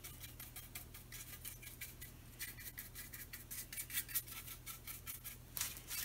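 A paintbrush dabbing latex paint onto a wooden wagon wheel: a quick, irregular run of soft taps and bristle scrapes, with a faint steady hum underneath.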